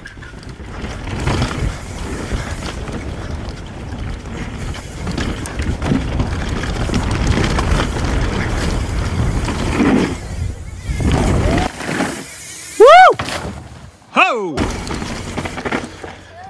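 Mountain bike ridden fast down a dirt and wooden-boardwalk trail: wind rumbling on the camera microphone mixed with tyre and bike rattle. The riding noise cuts off about twelve seconds in, and then the rider lets out two loud whoops, the first the loudest.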